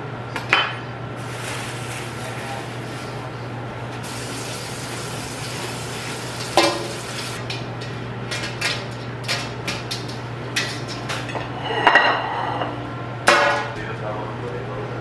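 Kitchen handling sounds: scattered knocks and clinks of dishes and utensils on a countertop, with a few louder ones near the end, over a steady low hum.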